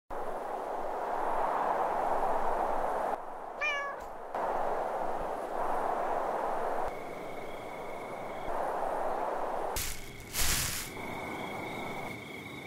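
A cat meowing once, briefly, about three and a half seconds in, over a steady hissing ambient haze that changes at each cut. A thin steady high tone joins from about seven seconds in, and a brief loud rush comes at about ten seconds.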